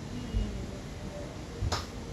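A single sharp click near the end, with a few dull low thumps in the room.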